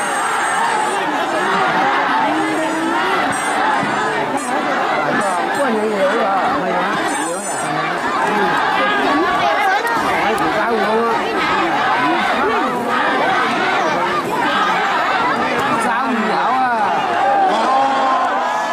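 A crowd of spectators chattering and calling out all at once: a steady, dense babble of many voices.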